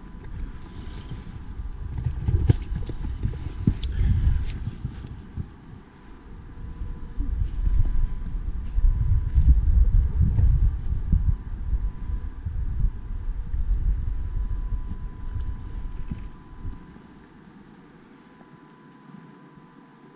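Wind buffeting the camera's microphone in gusts: a low rumble that swells and fades twice and dies away near the end, with a few sharp clicks from the camera being handled.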